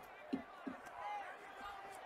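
Faint speech in the background, much quieter than the talk around it, with a couple of soft short thuds in the first second.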